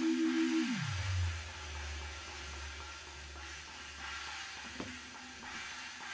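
A sustained two-note instrument tone, pulsing about five times a second, dives steeply down in pitch under a second in and settles into a low hum that slowly fades, over a steady hiss.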